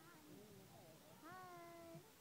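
A young girl's high voice calling out faintly, a short call about half a second in, then a longer drawn-out call held to the end, slowly falling in pitch.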